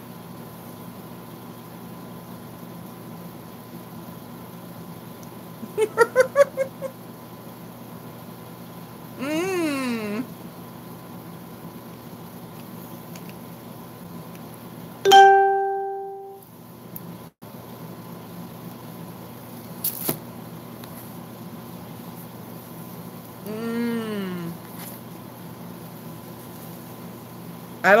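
A woman making a few closed-mouth 'mm' sounds with toothpaste in her mouth, one about a third of the way in and another near the end, plus a quick muffled laugh earlier. About halfway through, a single clear ringing tone starts sharply and fades over about a second.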